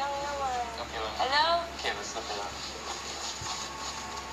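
A woman's voice making drawn-out exclamations that slide down and then sweep up in pitch, followed by quieter talk.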